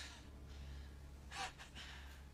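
A man's sharp breath, a short exhale with a weaker one just after, about one and a half seconds in, over a low steady hum.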